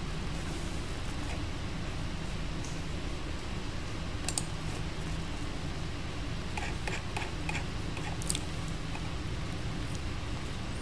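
Steady low room hum with a few faint mouse and keyboard clicks, several of them close together about seven seconds in.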